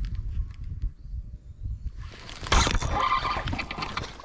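A hooked spotted bass splashing and thrashing at the water's surface beside the boat, with a loud burst of splashing about two and a half seconds in, over a low rumble.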